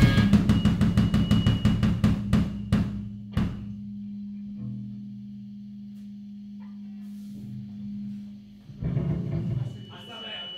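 A live rock band closes a song: full-band drum hits that slow down and stop a few seconds in, then guitar-amp notes held and ringing on at a lower level. Near the end comes a short, louder burst of sound.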